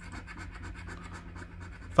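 A coin scratching the coating off a scratch-off lottery ticket in rapid short strokes.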